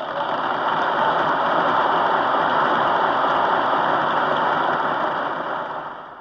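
Audience applauding in an old live concert recording, a dense, steady clapping that fades out near the end.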